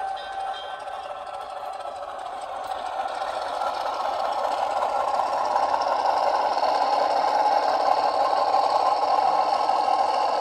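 Sound-equipped HO scale Rapido ALCO PA diesel locomotive model playing its diesel engine sound through its small onboard speaker, steady and growing louder from about three seconds in as the model runs close to the camera.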